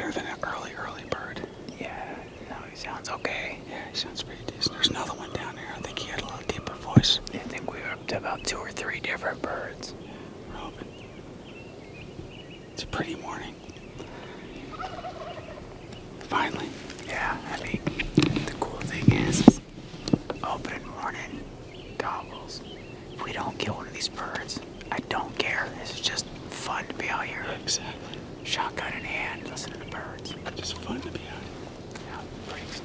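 Wild turkey gobbling, a tom sounding off at intervals.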